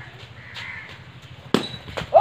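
Quiet outdoor background with faint bird calls, and a single sharp knock about one and a half seconds in, during a street cricket game.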